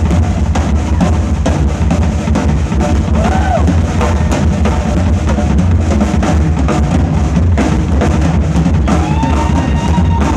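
Loud live rock music led by a drum kit with two bass drums, the bass drums hitting thick and fast under cymbals and snare. A few sliding higher tones sound over the drums, once near the middle and again near the end.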